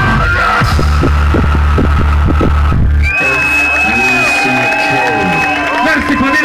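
Live rock band playing loud, with deep bass and drum hits, stopping abruptly about halfway through. Then the crowd cheers and yells over a long, high, steady tone.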